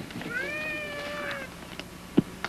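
A single drawn-out high vocal call, about a second long, rising slightly at first and then held level, over a faint steady hum.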